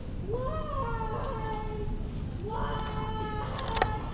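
A person's voice making two long, drawn-out whining vocal sounds, each sliding up in pitch at the start. A sharp tap comes near the end.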